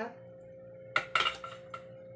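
Clatter of a metal kitchen utensil: a quick cluster of clinks about a second in and one more shortly after, over a faint steady hum.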